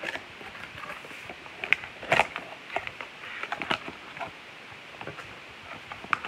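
Cardboard box of a DYMO LabelWriter 450 label printer being opened by hand: the flaps and packaging rustle and scrape, with a few sharp clicks and taps, the loudest around two seconds in.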